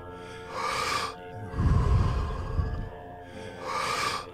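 A person doing Wim Hof-style power breathing, drawing deep forceful breaths in and letting them out through the mouth: a hissing breath in about half a second in, a longer rushing breath out, and another breath in near the end. Soft background music with held tones plays underneath.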